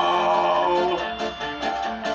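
Song accompaniment on plucked guitar, playing between sung lines and heard through a television speaker. A held note sounds for about the first half second, then separate plucked notes follow.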